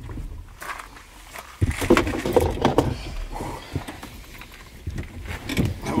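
People getting into a car's front seats: a thud about a second and a half in, then a low steady rumble under muffled voices.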